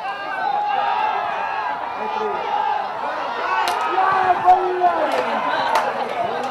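Men's voices at a football ground shouting and calling over one another, with no commentary. A few sharp knocks are heard about four to six seconds in.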